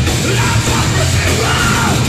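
Live hardcore punk band playing loud, with distorted electric guitar, electric bass and drums under a shouted lead vocal.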